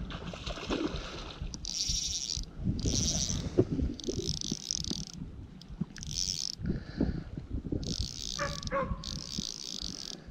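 Fishing reel being cranked in short bursts, a fast high ticking whir that starts and stops about six times, over knocks and handling noise. A dog whines briefly near the end.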